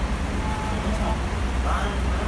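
Intercity coach bus's diesel engine running with a steady low rumble as the bus moves slowly across the terminal yard, over the hiss of rain. Short snatches of distant voices come through.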